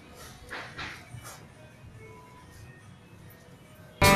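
Faint knocks and sliding of the wooden drawers at the base of a teak wardrobe being handled, a few knocks about half a second to a second and a half in.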